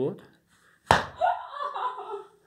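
One sharp slap about a second in, a hand striking the patient's body, followed by a short stretch of a person's voice.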